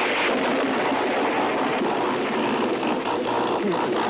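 Electrical zapping sound effect from a prop oven machine said to cook with ten zillion volts: a loud, steady hissing noise.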